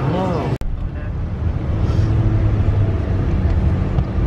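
Road noise inside a moving car's cabin: a steady low rumble of the vehicle driving. It cuts in abruptly about half a second in, after a brief snatch of a voice.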